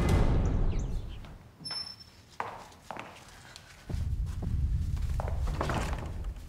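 The tail of a dramatic music cue with drums fades out in the first second. Then single footsteps knock on a hard floor, echoing as in a large hall, and a low steady rumble comes in about four seconds in.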